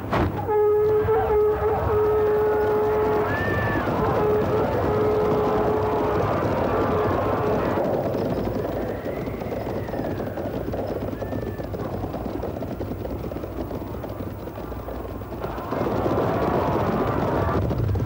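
A dense rumble of massed soldiers shouting and cavalry horses in a battle scene. A long held note begins about half a second in, breaks off and returns a few times, and the rumble eases in the middle before swelling again near the end.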